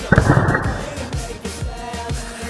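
Pop song with a steady beat; just after the start, a loud sharp crack with a short rattle fading over about half a second: a hockey stick slapping the ice and puck as a shot is taken.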